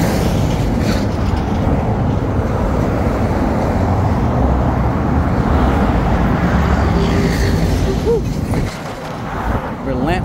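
Heavy interstate traffic passing close by: a tanker semi-truck and a stream of cars go past with steady, loud tyre and engine noise, easing briefly near the end.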